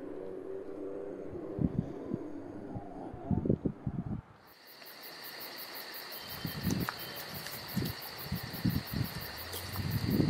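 Outdoor ambience: irregular low thumps and rumbles, like wind buffeting the microphone. About four seconds in, the sound cuts to a steady, high, cricket-like chirring with fast regular pulses, with the low rumbles going on beneath.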